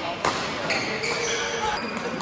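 Badminton rally: a sharp racket strike on the shuttlecock about a quarter second in and a lighter one shortly after, with court shoes squeaking on the floor in between.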